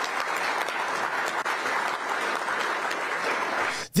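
Audience applause in a hall: many hands clapping in a steady, even patter that stops abruptly just before the end.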